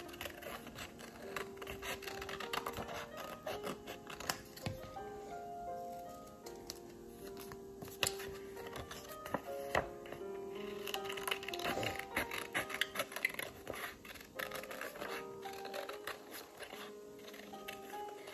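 Scissors snipping through paper in many short, irregular cuts, over soft background music with a slow run of notes.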